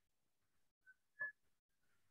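Near silence, broken about a second in by two brief high chirps, the second louder.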